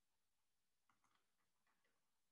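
Near silence, with a few very faint ticks in the second half.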